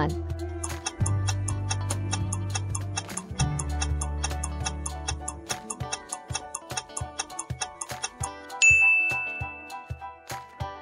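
Quiz-show background music with a quick, steady clock-like ticking of a countdown timer; the bass drops out about halfway through. A bright chime rings out near the end as the answer is revealed.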